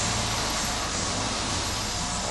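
Steady low mechanical hum under an even hiss, with no change through the moment.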